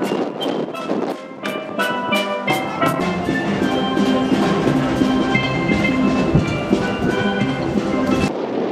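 Caribbean steel band playing: ringing steel pan melody over bass pans and a drum kit, with deeper notes filling in about two and a half seconds in.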